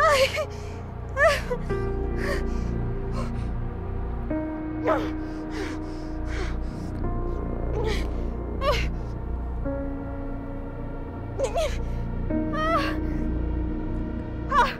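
A woman gasping and moaning in pain, in short cries every second or two, over slow dramatic background music of long held notes.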